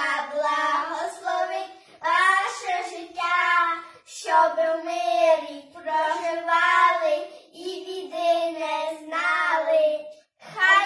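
Two children singing a Ukrainian Christmas carol (koliadka) with no accompaniment, in phrases of a couple of seconds with short breaks between them.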